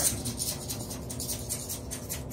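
Faint, rapid scratching and light ticking of a razor blade tool drawn and tapped along a tub-to-wall joint filled with soft Bondo, trimming a clean edge.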